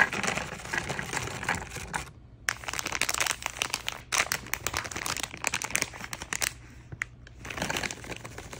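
Plastic snack packaging crinkling and crackling as it is handled, in spells broken by brief pauses, with a foil gummy pouch squeezed and worked in the hands.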